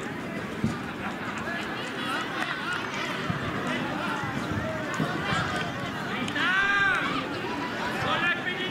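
Several voices calling out over one another across an outdoor football pitch, players and spectators, with a brief knock just under a second in and one loud, high-pitched drawn-out shout at about six and a half seconds.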